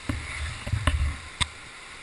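Steady rush of whitewater, overlaid in the first second and a half by a run of dull knocks and several sharp clicks as overhanging branches and twigs brush and snap against the head-mounted camera.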